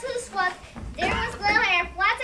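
A child's voice speaking loudly, with no words made out.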